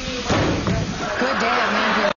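A door banging shut about a third of a second in, with voices talking in the room over and after it.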